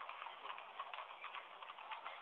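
Several horses walking on a paved street: an irregular clip-clop of hooves, the steps of different horses overlapping.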